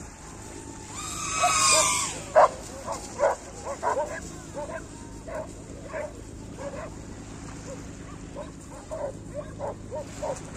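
A dog barking in short, repeated yaps, roughly one or two a second, with a long, high-pitched cry just before the barking starts.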